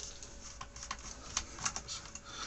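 A handful of small, irregular clicks and light rattles from fingers handling a circuit board's wires and plug-in connectors.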